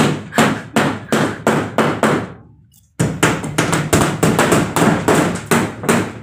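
Hammer blows against a plywood ceiling overhead, in quick even strokes about three a second, with a short break a little before halfway.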